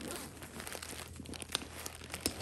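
Tissue paper crinkling and rustling, with irregular small crackles, as hands move the packing paper inside a new leather tote.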